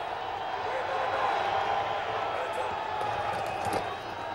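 Steady stadium crowd noise heard through a TV broadcast's field microphones, with faint indistinct voices in it. A few short sharp knocks near the end, as the ball is snapped and players collide.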